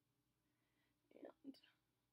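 Near silence: room tone, with one softly spoken word about a second in.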